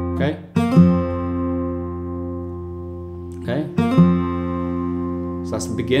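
Steel-string acoustic guitar, a Fylde Falstaff, fingerpicked: a short phrase of plucked bass and treble notes with a quick hammer-on on the third string from the second to the fourth fret, played twice about three seconds apart, each time left to ring on.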